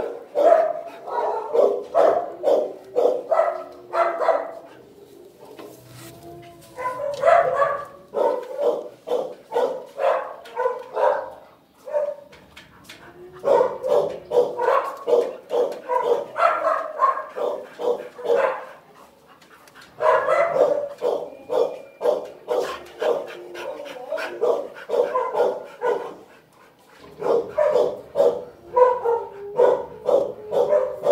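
Dogs barking over and over in quick volleys, with a few short lulls.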